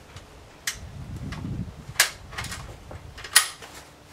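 A few sharp knocks at intervals of a little over a second, the last two the loudest.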